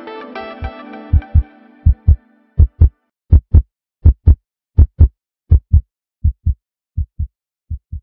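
Music fading out, then a heartbeat: steady lub-dub double thumps at about 80 beats a minute, growing gradually quieter over the last few seconds.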